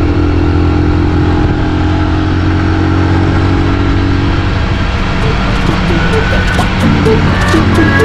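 Yamaha Libero 125 single-cylinder four-stroke motorcycle engine running steadily while riding at cruising speed, with background music over it from about halfway through.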